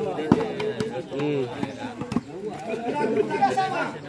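Crowd of spectators, several voices talking and calling out over one another, with a sharp knock shortly after the start.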